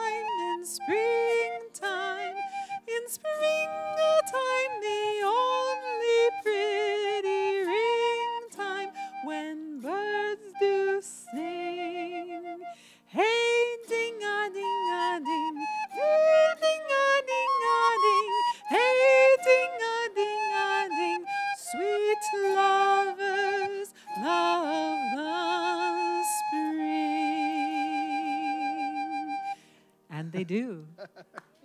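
A woman singing with autoharp accompaniment and a recorder, in a duet of early-music style. Near the end the recorder holds a long wavering note, and the song stops.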